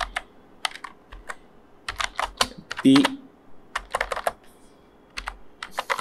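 Typing on a computer keyboard: quick runs of key clicks in several bursts, separated by short pauses.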